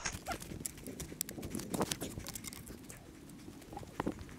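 Irregular clicks and knocks with crunching snow as a ski tourer moves about in deep snow, handling his skis and poles.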